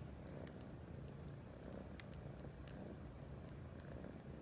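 A tabby cat purring faintly and steadily as it kneads a dog's back with its paws, with a few small, sharp ticks and clicks scattered through.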